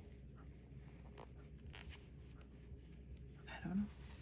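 Faint, scattered rustling and scratching of fingers handling a ball of cotton-like yarn and its paper label band, over a low steady room hum.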